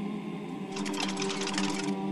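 Trailer music: a sustained choral chord, with a fast, dry rattle of clicks laid over it for about a second, starting just under a second in.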